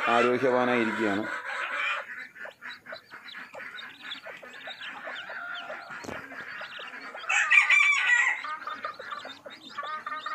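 Domestic chickens: a newly hatched chick peeping in short, repeated high chirps beside its broody hen, with one louder chicken call lasting about a second a little past the seventh second.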